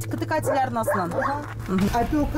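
Voices talking at close range, with a dog barking and yelping among them.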